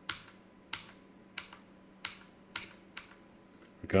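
Computer keyboard key presses: about six short, light clicks spaced a little over half a second apart, stepping a chart replay forward one candle at a time.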